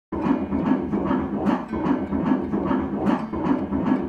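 Fetal heartbeat played through an ultrasound machine's Doppler audio: a fast, regular pulsing at about two and a half beats a second, roughly 150 a minute, a normal fetal heart rate.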